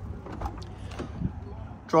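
A few faint clicks as the outside handle of a 2008 Toyota Corolla's driver's door is pulled and the door is opened.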